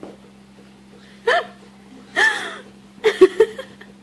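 A person laughing in three short bursts about a second apart, the last a quick run of laughs.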